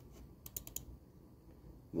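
A quick run of about four faint, light clicks a little under a second in, over quiet room tone.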